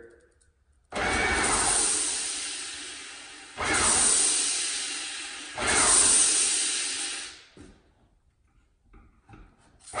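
Graco 390 PC airless paint sprayer spraying water from the gun into a plastic bucket, with its reversed tip, to purge air from the hose. Three surges of spray come about two seconds apart, each starting sharply and fading, then a pause of about two seconds before the next surge near the end.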